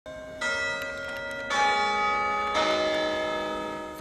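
Church bells ringing from a belfry: strikes about a second apart, each at a different pitch, each ringing on under the next.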